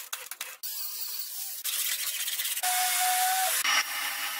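Short workshop sounds cut together: a few sharp clicks, then stretches of hissing, one with a steady whine beneath it. Near the end comes the hiss of a paint spray gun.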